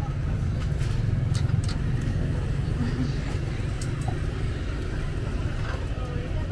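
Outdoor food-market ambience: a steady low rumble under faint voices, with a few light clicks about one and a half seconds in and again near four seconds.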